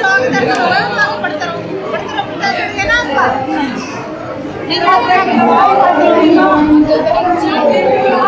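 A crowd of worshippers talking over one another at a temple shrine, many voices at once with no single speaker standing out; it grows louder about five seconds in.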